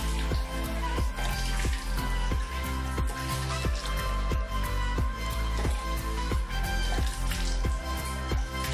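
Background music with a steady beat, about three beats a second, over bass and sustained notes.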